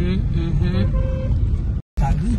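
Road and engine rumble inside a moving car's cabin, with voices talking over it in the first second. The sound cuts out for a moment near the end.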